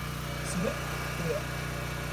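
Portable generator's engine running at a steady idle, a constant low hum throughout.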